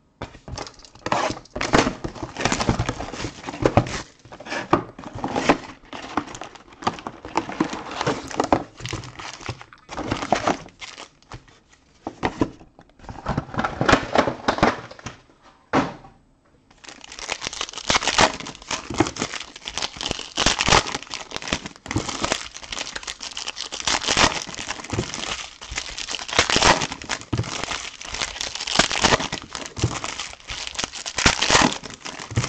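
Crinkling and rustling of plastic wrapping and foil trading-card packs as a card box is unpacked and its packs handled. The crinkling comes in irregular handfuls with short pauses at first, then from about 17 seconds in turns dense and continuous, with tearing.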